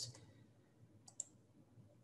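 Near silence with two faint computer clicks close together a little after a second in, the kind made when advancing a presentation slide.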